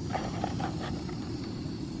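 Portable gas canister stove burner running, a steady low rushing noise from the flame.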